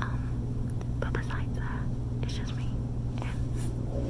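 A woman whispering close to the microphone in short breathy phrases, over a steady low hum.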